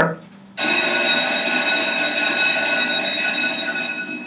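An electric bell or alarm ringing loudly and steadily, starting about half a second in.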